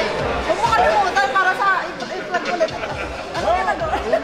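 Indistinct conversation: several people chatting, with voices overlapping.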